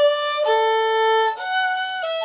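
Solo violin, bowed, playing a slow melody of long held notes: one note, a lower note from about half a second in, then a higher one near the end, with no accompaniment.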